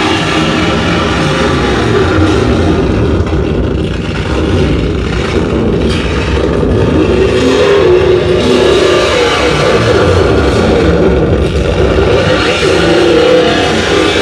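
Loud, dense distorted electronic noise from a live harsh-noise set, with a churning low rumble and a wavering drone rising out of it about halfway through, shaped by hand on a Roland SP-404 sampler.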